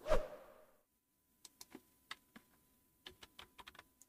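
Computer keyboard keys tapped in two short runs of light clicks, about a dozen in all, as a Windows login PIN is typed in. A single louder knock comes at the very start.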